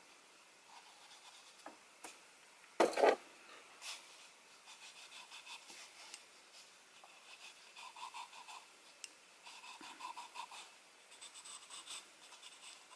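Charcoal pencil scratching faintly on sketchbook paper in quick, repeated shading strokes. About three seconds in there is a short, louder thump.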